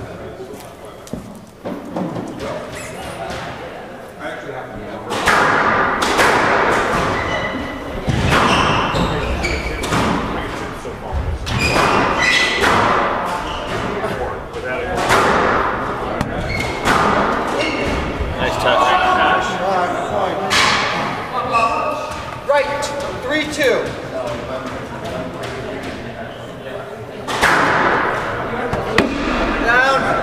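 Squash rally: the ball struck by rackets and hitting the court walls in a run of sharp thuds and smacks, echoing in a large hall, with people talking throughout.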